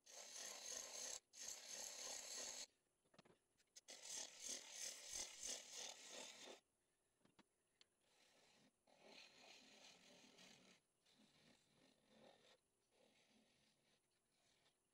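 Turning tool cutting a spinning cherry-wood piece on a wood lathe, a scraping hiss of shavings coming off in passes. There are two long, louder passes in the first seven seconds, then three shorter, quieter ones.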